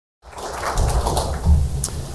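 Handling noise on a lectern microphone: low thumps and a rustle as papers are moved about on the lectern, with a sharp click near the end. It comes in abruptly just after the start.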